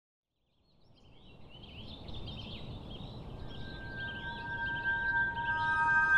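Birdsong, many short chirps from several birds over a low steady background rumble, fading in from silence. About halfway through a soft sustained music chord fades in beneath it.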